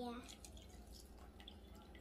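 Milk pouring from a plastic measuring cup into a stainless steel mixing bowl: a faint trickle and dripping.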